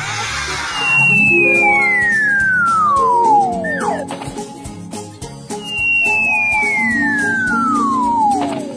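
Two long falling whistle glides, a cartoon slide-whistle effect for a toy sliding down a bath-toy slide. The first runs from about a second in to about four seconds, and the second starts past the middle and runs on near the end. Both play over children's background music.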